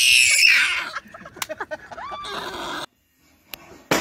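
A toddler's loud, high-pitched shriek, held for about a second and sliding down in pitch, followed by quieter scattered voice sounds.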